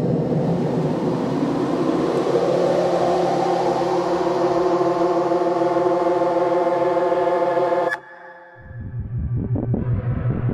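Electronic music score: a dense, hissing noise drone with several steady held tones under it, which cuts off suddenly about eight seconds in. A lower pulsing drone starts near the end.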